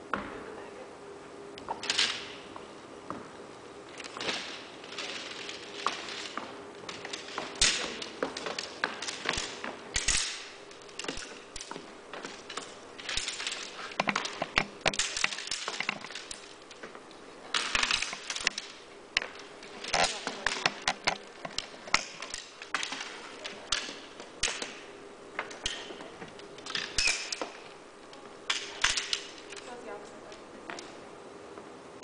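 Fabric rustling and swishing as a portable trade show banner is unfolded and spread out, with scattered sharp clicks and knocks from its thin frame poles being handled and fitted together. A steady low hum runs underneath.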